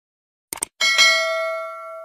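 Subscribe-animation sound effects: a quick double mouse click, then a single bright bell ding that rings out and slowly fades.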